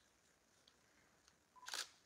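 Near silence in a hushed hall, broken near the end by one short, sharp noise burst, like a click.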